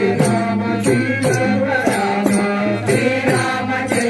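Group devotional singing of a Rama namavali bhajan: several voices chanting over a held low drone, kept in time by small hand cymbals struck at a steady beat of about two to three strikes a second.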